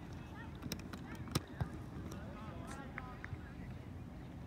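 Distant shouts and calls from players and spectators across a soccer field, over a steady outdoor rumble, with a few sharp knocks; the loudest comes about a second and a half in.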